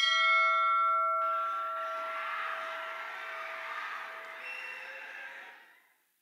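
A single deep bell strike as a cinematic sound effect: a sharp hit followed by a long ringing decay. A rushing noise swells in under it about a second in, and both die away near the end.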